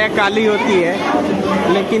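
Speech only: several people talking, their voices overlapping.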